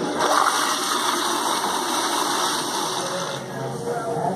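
A commercial restroom toilet fixture flushing: a loud rush of water that lasts about three and a half seconds, its high hiss dying away near the end.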